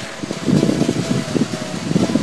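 Jeep Wrangler driving through a flooded sandy track, its engine and splashing water mixed with rough, gusty wind noise on the microphone.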